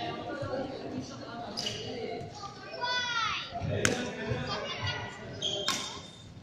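Badminton rackets striking a shuttlecock in a rally: two sharp cracks, one past the middle and one near the end, over background voices of players and children.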